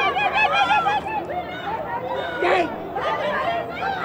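Teenagers in a street crowd laughing and calling out, several voices overlapping, with a quick run of laughs in the first second.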